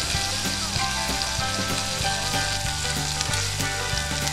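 Sliced bell peppers and onions sizzling steadily in olive oil in a black cast-iron pan over hot charcoal, with light scrapes of a spoon stirring them.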